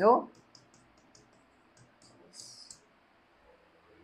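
Stylus tip tapping and scratching on an interactive smart board's screen while writing: a run of light clicks, then a short scratch about two and a half seconds in.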